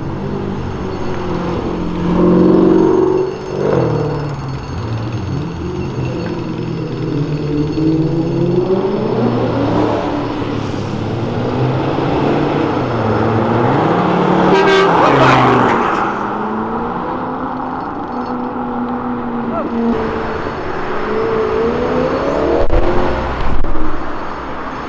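Car traffic on a city avenue: several cars pass one after another, their engines rising and falling in pitch as they accelerate and ease off, with the loudest pass about fifteen seconds in. A car horn sounds briefly about two seconds in.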